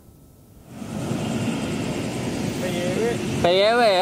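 Steady city road traffic noise, setting in about a second in after a brief quiet, with a voice starting near the end.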